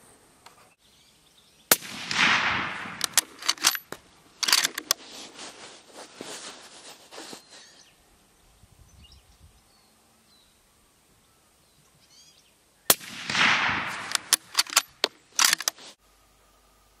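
Two shots from a suppressor-fitted Sako rifle in 6.5x47 Lapua, about eleven seconds apart. Each is a sharp crack that trails off over about a second, followed by a run of quick clicks.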